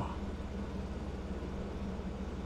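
Steady low electrical hum with a faint buzz under it, from a microphone's background noise, and no speech.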